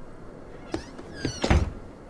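Cartoon sound effects: a short high cat-like meow falling in pitch, then a low thump about a second and a half in.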